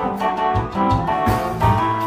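Live blues band playing with electric guitar, keyboards and drums: sustained keyboard and guitar notes over a low bass line, with regular drum and cymbal hits.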